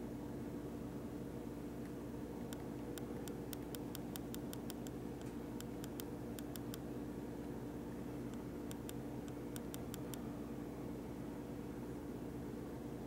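Steady low electrical hum with hiss, broken by three runs of light, quick clicks: a long run from about two and a half seconds in, a shorter one around six seconds, and another around nine to ten seconds.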